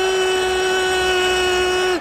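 A Spanish football commentator's long, held goal shout: one unbroken note at a steady pitch, dropping slightly as it cuts off near the end.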